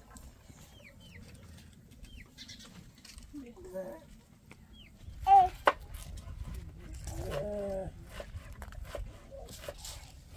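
Goat bleating: a loud, wavering bleat about five seconds in, then a longer, lower one around seven seconds in.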